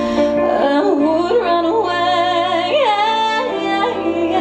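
A woman singing a slow pop ballad live, her voice sliding between notes in melodic runs, over acoustic guitar and violins.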